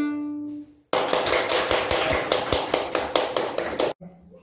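A violin's last bowed note fading away, then a small audience clapping for about three seconds, starting and stopping abruptly.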